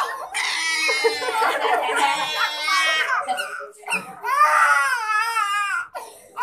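A toddler crying in two long, high, wavering wails, the second starting about four seconds in.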